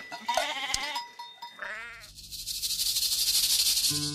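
Sheep bleating twice in short, wavering calls in the first two seconds, then a steady high hiss from about two seconds in.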